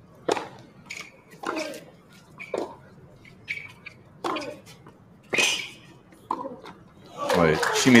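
Tennis rally on a hard court: a serve, then sharp racket-on-ball hits and bounces, roughly one a second. A man's voice starts talking near the end.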